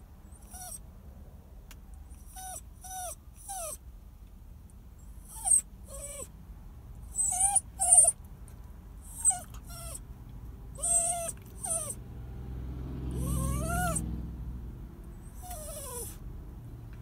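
Small dog whining in short, high-pitched cries, each rising and falling, about a dozen spread across the time, with a longer rising whine near the end over a low rumble. It is anxious crying at being left behind while his person is out of sight.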